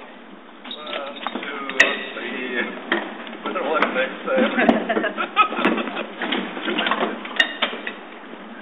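People clambering out of a light aircraft's cabin: a few sharp knocks and clicks against the airframe among overlapping, untranscribed voices.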